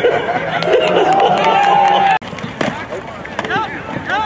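Several people shouting and calling out at once, one voice holding a long call about a second in. The sound cuts off abruptly just past halfway, and quieter shouting follows.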